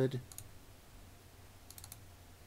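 Faint clicks from operating a computer: a couple of clicks shortly after the start and a quick run of three or four near the end. The tail of a spoken word is at the very start.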